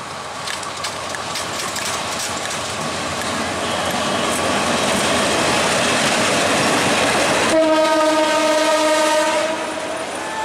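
A Bangladesh Railway diesel-electric locomotive and its coaches run past, the engine and wheel noise on the rails growing louder as the train draws near. About seven and a half seconds in, a locomotive horn sounds one steady blast of about two seconds.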